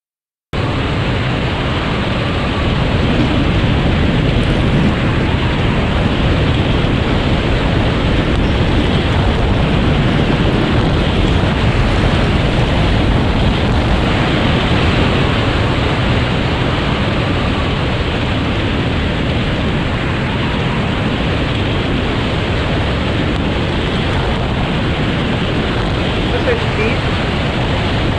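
Bobsled speeding down an ice track, heard from a camera riding on the sled: a loud, steady rushing roar that starts abruptly about half a second in. It is played back over a video call.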